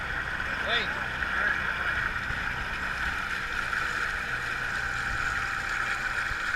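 Side-by-side UTV's engine running steadily while the machine sits wheel-deep in a muddy water hole, under a steady hiss. Its low engine note drops back in the middle and picks up again near the end.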